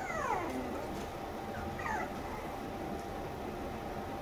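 Toy poodle puppy whimpering: two short calls that fall in pitch, one at the start and a shorter one about two seconds in.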